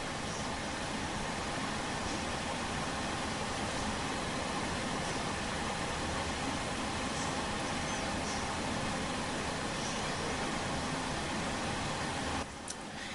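Steady hiss with a low rumble underneath: constant background noise, with no speech and no distinct events.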